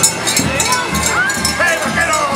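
Cowbells worn by sheepskin-clad carnival figures clanking unevenly as they run, among crowd voices, with a shout in the second half.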